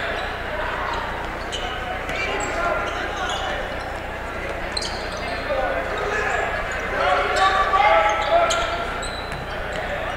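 Basketball being dribbled on a hardwood gym court amid a crowd's indistinct voices, which grow louder about seven seconds in.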